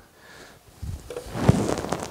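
Handling noise on a worn wireless microphone: cloth and cord rustling against the mic as it is adjusted, with one sharp knock about halfway through.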